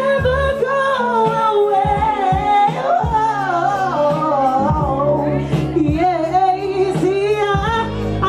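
A song: a singing voice in long, wavering, sliding lines over backing music with steady bass notes.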